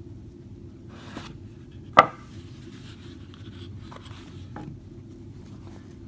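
A small cardboard box being opened and handled on a table: one sharp knock about two seconds in, with a few faint taps and rustles of packaging.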